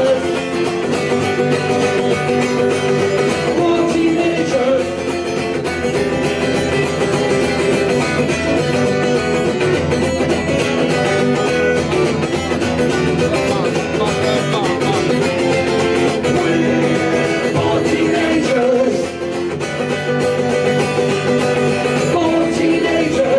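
Acoustic guitar strummed in a live solo performance, with a man singing over parts of it.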